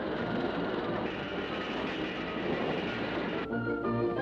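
Cartoon sound effect of a dense, noisy clatter as a pile of steel girders builds itself into a riveted house, over orchestral music. The noise cuts off about three and a half seconds in, leaving the music.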